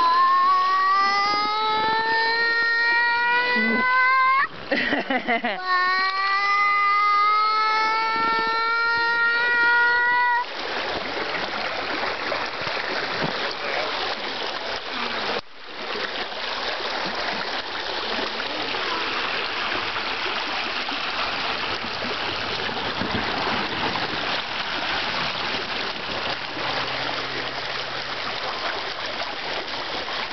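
Two long, high squeals, each held about four seconds and rising slowly in pitch, over running water. From about ten seconds in, creek water rushes and splashes over a small rocky waterfall.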